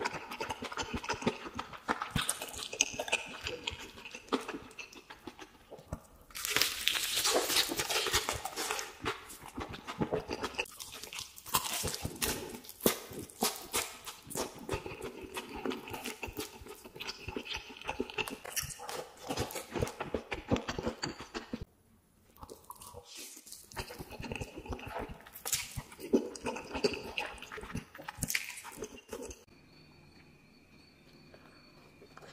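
Close-miked eating of crispy fried chicken: crunching through the fried coating, with wet chewing and lip smacking. The crunching is densest and loudest a few seconds in, and the sounds drop away briefly about two thirds of the way through.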